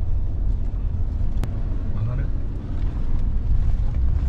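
Low, steady rumble of a car driving, heard from inside the cabin, with a single sharp click about a second and a half in.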